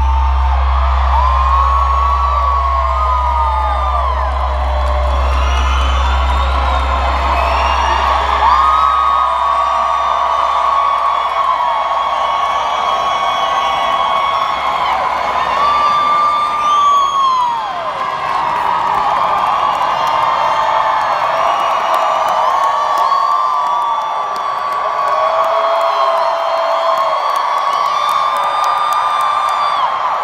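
Concert crowd cheering and screaming at the end of a song, with many long high whoops from people close by; a low bass note from the band fades away over the first several seconds.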